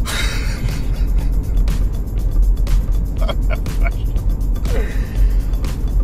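Steady low road rumble inside a moving car's cabin, with background music over it.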